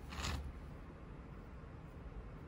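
A short brushing swish about a quarter second in as a hand moves across skin and soft clay, then only faint room noise while fingers press the clay wall.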